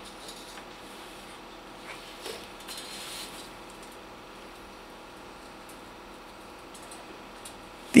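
Faint metallic clinks and knocks from a 4 mm steel plate being levered over in a bench vise to bend its tabs, a few small clicks about two to three seconds in.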